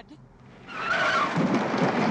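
Car speeding off on a dirt road: a loud rush of tyre and engine noise that sets in about a second in and holds steady.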